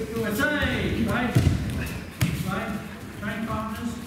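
Indistinct voices echoing in a large hall, broken by two heavy thuds, one about a second and a half in and another just over two seconds in, of bodies landing on judo mats during throw practice.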